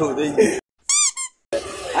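Men's voices cut to dead silence, then two short high squeaks, the first longer, each rising and falling in pitch: a squeak sound effect edited in. Talk resumes after them.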